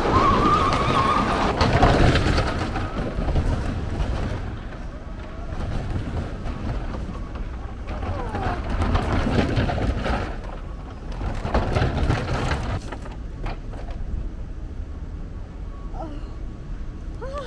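A wheeled cart rolling down a wooden roller coaster track: a continuous rumble and clatter, loudest in the first couple of seconds and easing off later in the run, with voices now and then.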